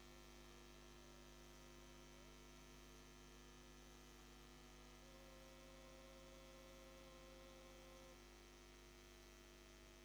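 Near silence: a faint, steady electrical mains hum from the sound system.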